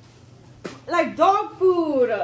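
A woman gagging and groaning into a plastic bag in disgust at the taste of an edible insect: a sharp click a little over half a second in, then several short strained vocal heaves whose pitch rises and falls.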